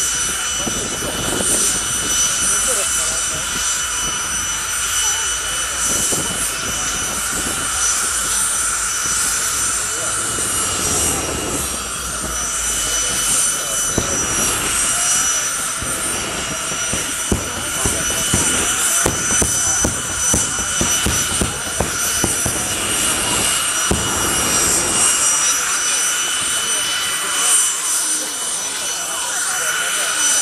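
Jet car's turbine engine running while parked, a loud steady whine made of several high tones held throughout. From about a quarter of a minute in, flame shoots from the exhaust, and for roughly ten seconds a run of sharp crackles and pops is heard over the whine.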